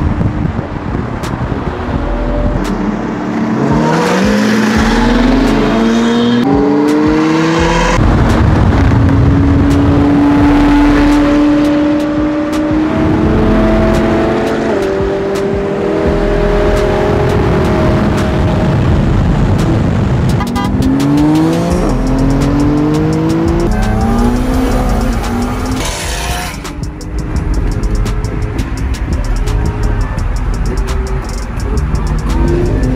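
Supercar engines accelerating hard through the gears: the engine note climbs in pitch, drops at each upshift and climbs again, in two runs of acceleration with a steadier cruise between, over background music.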